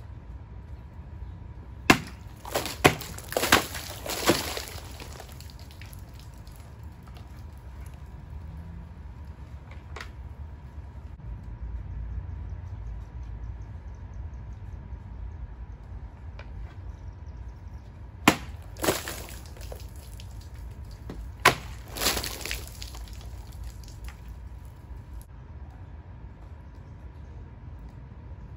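Sword blades cutting through cartons: a quick run of four sharp cuts about two seconds in, then, after a long lull, two more pairs of sharp cuts past the middle, each with a brief clatter after it.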